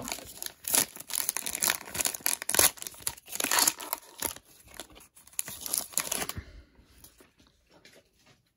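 Foil wrapper of a Contenders football trading-card pack being torn open and crinkled by hand, in a series of sharp rips and rustles. It stops about six seconds in, once the pack is open.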